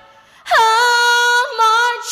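A woman's solo singing voice, with no accompaniment. After a brief pause she scoops up into a long, steady held note, then sings a second, shorter note near the end.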